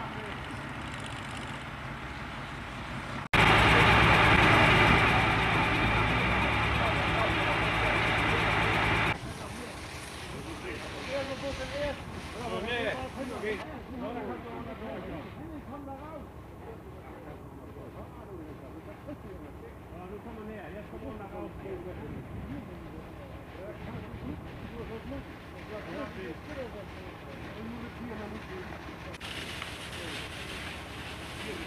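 A steady engine-like hum outdoors. From about three seconds in, a much louder rushing machine noise cuts in suddenly and stops just as suddenly about six seconds later. After that, faint indistinct voices over the background.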